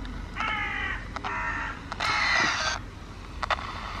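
A crow cawing three times, each harsh caw about half a second long, the third the loudest. Underneath is a low hiss from an AM pocket radio sweeping through stations as a spirit box.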